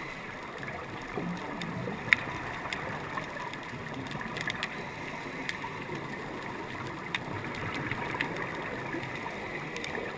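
Underwater sound on a diver's camera during a scuba dive: a steady hiss of water noise with scattered sharp clicks, and one louder click about two seconds in.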